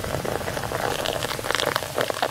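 Sparkling wine being poured into a glass flute and fizzing: a steady crackling hiss of bursting bubbles.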